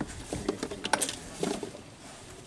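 A scatter of sharp clicks and light clinks from small glass drug vials and tranquilizer-dart parts being handled, the loudest cluster about a second in.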